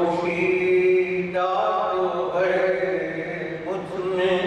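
A man's voice reciting Urdu verse in a chanted, sung melody, holding long steady notes with short breaks between phrases.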